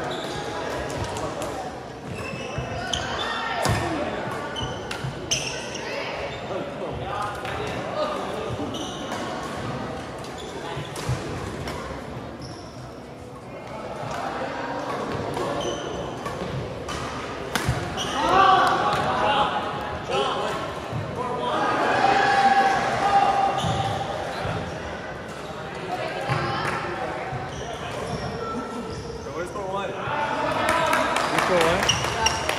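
Badminton rallies in a large gym: sharp racket strikes on the shuttlecock come at irregular intervals, mixed with indistinct chatter from people courtside, echoing in the hall.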